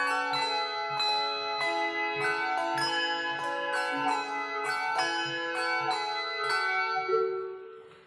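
Handbell choir ringing a piece of music, many bells struck in turn and chords left ringing. Near the end the bells die away into a brief pause.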